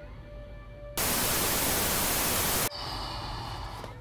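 A burst of static hiss, about a second and a half long, that cuts in and cuts off abruptly at a flat level.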